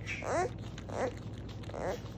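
Beaver kit making short, whiny cries that rise in pitch, two in the first second and a rougher one near the end: the 'angry' noises a young beaver makes while eating.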